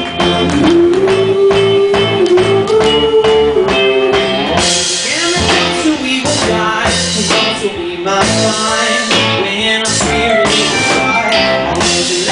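A live rock band playing a song, with electric guitars and a held, sliding melody line over them. Drums and cymbals come in about four and a half seconds in.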